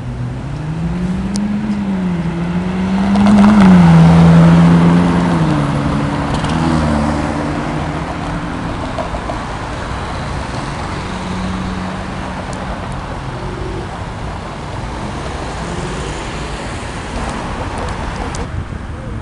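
A car engine accelerating, its pitch climbing and dropping back twice as it changes up through the gears, loudest about four seconds in, then fading into steady city traffic noise.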